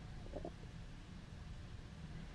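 Faint room tone: a low, steady rumble, with one brief faint sound about half a second in.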